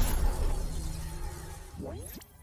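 Intro logo-reveal sound effect: a loud, noisy hit fading away, with a short rising sweep near the end.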